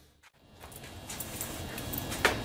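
A brief drop to near silence at an edit, then faint room noise with a few light clicks in the second half.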